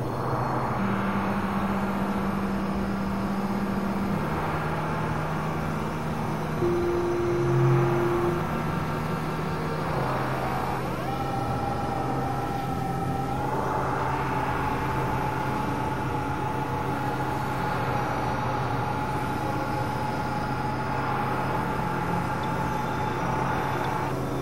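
Experimental synthesizer drone: low held tones that change pitch every few seconds over a noisy rumble, joined about eleven seconds in by a higher held tone that lasts to the end, with rising sweeps between about ten and thirteen seconds.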